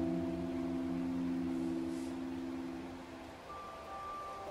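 Slow relaxing solo piano: a low chord rings on and slowly dies away, fading out about three seconds in, and a new higher note enters near the end. Underneath runs the steady rush of a flowing stream.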